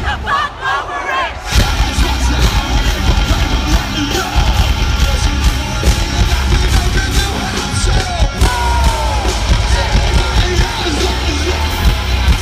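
Live metalcore band playing loud: distorted electric guitars, bass and drums with a shouted vocal. The full band drops back briefly at the start and crashes back in about a second and a half in.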